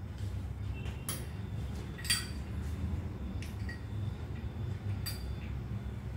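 A steel spoon clinking against a small glass bowl four times, a second or more apart, the loudest about two seconds in, over a low steady hum.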